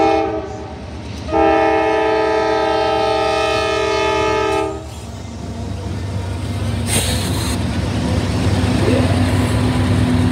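Norfolk Southern diesel locomotive air horn sounding a chord of several tones: one blast ends about half a second in, then a long blast of about three and a half seconds. The lead locomotives' diesel engines then rumble past at close range, with a brief hiss about seven seconds in.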